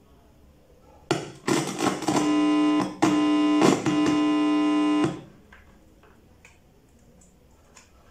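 Loud electrical buzz through the TV's speaker as RCA audio/video plugs are pushed into the jacks. It cuts in with clicks about a second in, drops out and comes back twice as the plugs make and break contact, and stops about five seconds in.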